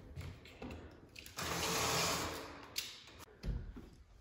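A window shade being pulled down: a smooth swishing rush that swells and fades over about a second and a half, midway through. A soft low thump follows near the end.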